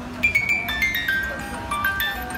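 A music box in the shape of a vintage sewing machine playing a tinkling melody of high, plucked metal notes, each ringing on briefly. The tune starts about a quarter second in.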